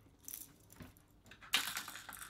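Hard plastic crankbaits and their treble hooks clicking as they are handled: a few faint ticks, then a louder clatter about one and a half seconds in as a hand goes into a plastic tackle box.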